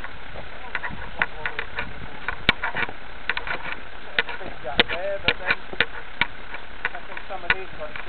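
Scattered sharp clicks and knocks over a steady hiss, with a few brief, indistinct voices.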